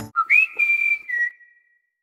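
A brief whistled phrase of three notes: a short low note, a jump up to a held high note, then a step down to a slightly lower note, ending about a second and a half in.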